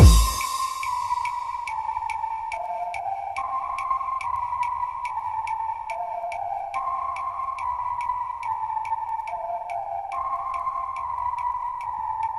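Electronic dance track in a breakdown, with the kick drum dropped out. A crash-like hit at the start fades over about a second. A short synth riff repeats about every three and a half seconds over a held high tone and light, even ticks.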